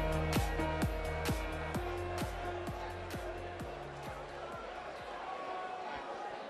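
Electronic intro music with a steady beat, about two beats a second, fading out over the first four to five seconds, leaving the faint murmur of the crowd in the hall.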